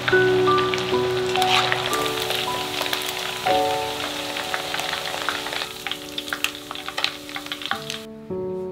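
Beef strips coated in starch deep-frying in hot oil, a dense sizzle that dies down about halfway through as the beef is lifted out, leaving scattered pops and crackles from the oil. Soft piano music plays under it.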